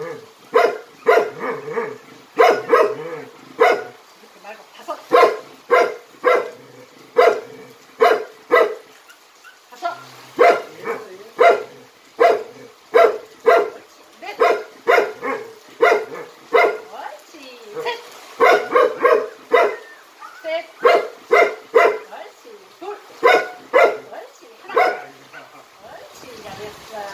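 Jindo dog barking repeatedly in runs, about one to two loud barks a second with short pauses between runs; the dog is excited.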